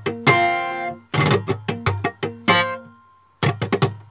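Steel-string acoustic guitar in open C-G-D-G-A-D tuning, played fingerstyle. Ringing chords alternate with sharp percussive hits. A chord fades away about three seconds in, then a quick run of about six hits comes near the end.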